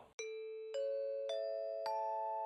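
Rising four-note chime jingle: bell-like notes struck about half a second apart, each higher than the last, ringing on and overlapping.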